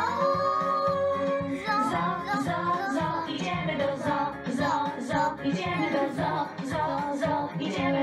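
Young girls singing karaoke into microphones over a backing track played through a small speaker.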